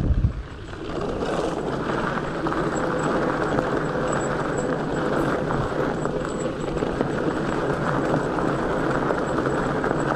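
Steady rumbling rush of a fat-tire electric mountain bike riding fast over a dirt trail: wide tires rolling on dirt and air rushing past the chest-mounted action camera. A heavy low thump comes right at the start.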